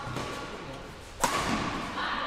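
One sharp crack about a second in, typical of a badminton racket hitting the shuttlecock hard during a doubles rally, with faint voices in the hall around it.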